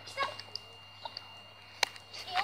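A brief high-pitched young child's vocal sound just after the start, then a single sharp click near the end, over faint steady background hum.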